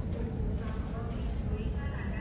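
Indistinct voices of people talking on the sidewalk over a constant low street rumble.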